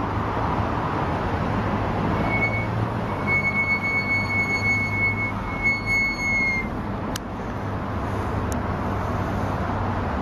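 Steady rolling noise and low hum of a slow personal ride moving along a park path. In the middle, a thin high whine holds for about four seconds, broken twice.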